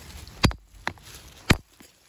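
Two sharp knocks about a second apart, with a fainter click between them: a hammer striking a rock to break a corner off it.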